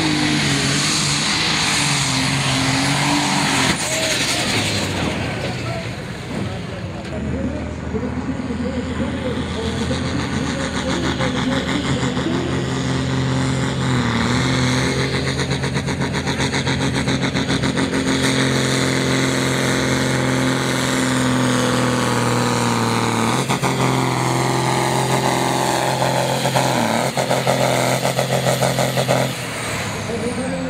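A modified John Deere 4850 pulling tractor's diesel engine running at full load as it drags the weight sled, holding a steady note. The note changes about three-quarters of the way through and falls away just before the end as the pull finishes.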